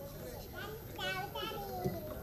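Faint background chatter of several voices, including high-pitched ones like children's, with no one speaking into the microphone.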